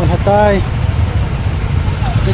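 Idling vehicle engines, a steady low rumble, with a man's voice briefly at the start.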